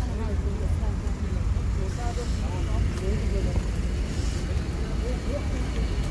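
Indistinct talking of people in the background over a steady low rumble.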